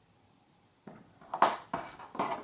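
Near silence, then from about a second in a few quick clicks and knocks of handling on a tabletop as a metal yarn needle is set down and the crochet work is handled.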